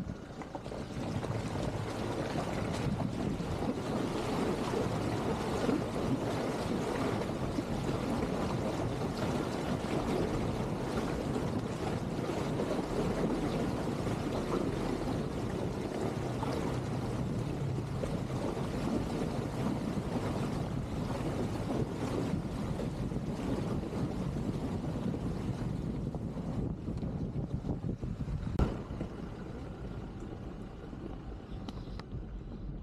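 An SUV driving through a shallow, stony river: a steady rush of water splashing around the tyres over the running engine. The rush eases near the end, and a single sharp knock is heard.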